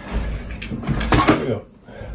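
Handling and rummaging noises as a hard plastic object is fetched and moved about, with a sharp clatter or knock a little over a second in.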